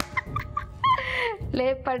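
A woman laughing a cackling laugh: a few short, high, rising yelps, a breathy burst about a second in, then a quick run of 'ha-ha' bursts, about five a second, each falling in pitch.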